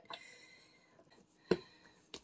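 A silicone spatula scraping softly against a stand mixer's beater and bowl, over a quiet room, then one sharp click about a second and a half in.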